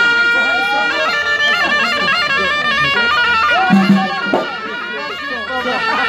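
Traditional Moroccan folk music: a reedy wind instrument holds a long note, then runs into a quick, ornamented melody. Voices sound beneath it, and a low drum pulse comes in briefly about two-thirds of the way through.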